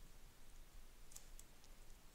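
Near silence with a few faint clicks of a stylus writing on a tablet, mostly in the second half.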